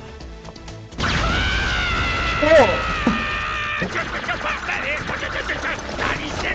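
Anime soundtrack: about a second in, a sudden loud sound effect of several held ringing tones with a sliding pitch in the middle cuts in and stops just under three seconds later. Japanese dialogue follows.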